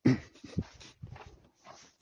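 Tibetan mastiff panting close by in short, rough breaths, opening with one loud burst right at the start.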